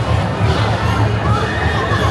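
A dense, loud crowd over a steady pounding drum beat of traditional Lakhe dance music. A high wavering call rises above the crowd in the second half.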